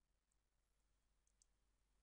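Near silence: a digital quiet floor between narrated sentences.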